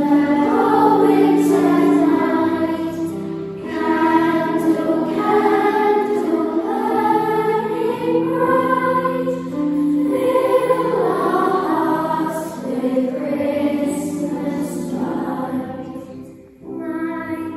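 A children's school choir singing together, in held, sustained phrases with brief pauses between them.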